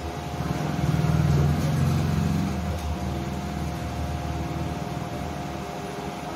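A man's low, steady nasal hum on a long out-breath: bhramari, the humming-bee breath of yoga. It begins about half a second in, is loudest over the next two seconds, then carries on more softly.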